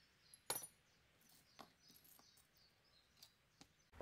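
Near silence broken by a few faint clinks of small metal exhaust-mounting hardware (a steel bracket, bolts and washers) being handled, the sharpest about half a second in.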